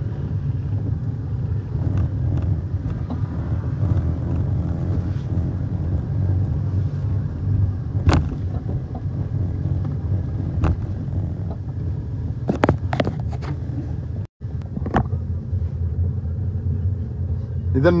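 Steady low rumble of street background noise on a moving phone microphone, with faint voices in the distance. A few sharp clicks come around the middle, and the sound drops out for an instant about three-quarters through.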